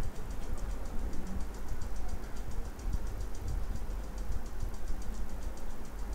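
Steady low background hum with faint, evenly spaced ticking; no speech.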